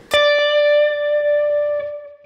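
Clean electric guitar playing a single D note: picked once and left to ring for nearly two seconds, fading slowly until it is damped.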